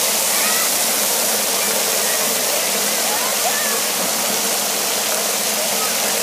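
Steady hiss of splash-pad water jets spraying onto the play surface, with faint distant children's voices.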